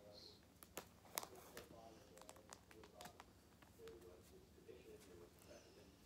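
Quiet handling of plastic binder pages and trading-card sleeves: scattered faint ticks and crinkles over a low steady hum.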